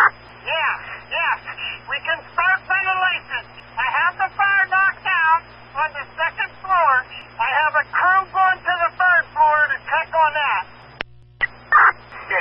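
Fire department two-way radio traffic: speech through a narrow, telephone-like band over a steady hum and a faint steady tone. The transmission cuts out briefly near the end, then resumes.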